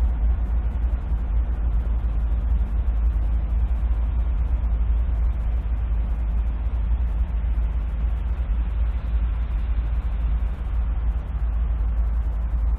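Diesel freight locomotive engine running with a steady low rumble.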